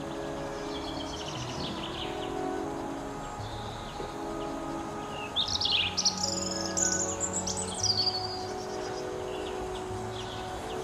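A songbird singing in quick, warbling and trilling phrases, loudest between about five and eight seconds in, over soft background music with sustained notes.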